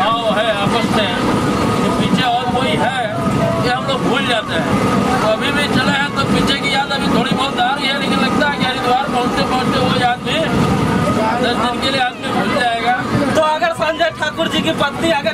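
Men talking over the steady running noise of a passenger train, heard from inside the coach.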